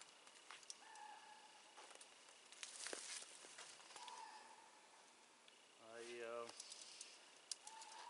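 Near silence: faint rustling and light clicks from hands working a wire snare in brush, with a brief voiced sound, a grunt or murmur, about six seconds in.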